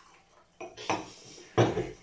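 Drinking glasses knocking and clinking against each other and against the table as they are handled: a few separate knocks, the loudest near the end.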